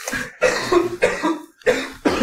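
A man coughing, a run of about four coughs in quick succession.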